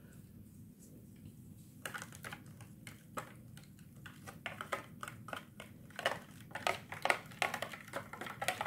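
Small plastic spoon stirring plaster of Paris and water in a plastic tray: a run of quick clicks and scrapes against the tray that starts about two seconds in and gets busier near the end.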